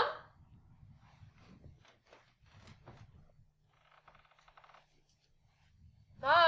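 Faint footsteps and handling noise as a person walks carrying a bulky mesh bag: scattered soft knocks, with a short patch of crinkly rustling about four seconds in. At the very start the end of a loud called-out voice fades away.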